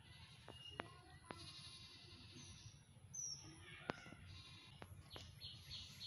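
Quiet outdoor ambience with faint bird chirps and a few sharp clicks, then a rapid high chirping repeating about three times a second near the end.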